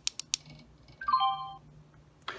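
Plastic button on an Onforu portable Bluetooth speaker clicked in a quick double press, then about a second in the speaker plays a short four-note falling tone, its prompt for Bluetooth disconnecting and pairing mode starting.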